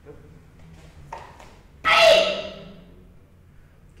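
A karate kiai: one loud, sharp shout that falls in pitch and dies away, about two seconds in, on landing the jump in a Shotokan kata. A brief rustle of movement comes about a second before it.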